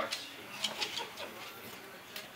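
Faint, scratchy rustling: a string of soft brushing ticks from a child's fingers scratching through her hair.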